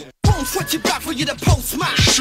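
Hip hop track with a vocal over a beat; the sound cuts out completely for a moment just after the start.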